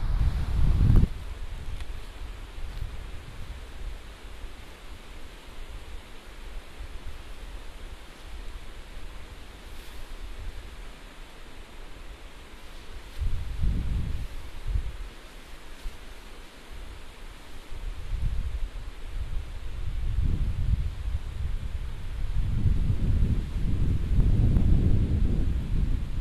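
Wind buffeting the microphone in low rumbling gusts over a steady outdoor hiss. One gust comes about halfway through, and the gusts build and grow stronger toward the end.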